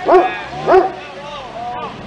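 A man shouting "go!" twice, about half a second apart, cheering on a car doing donuts, with the car's engine faint underneath.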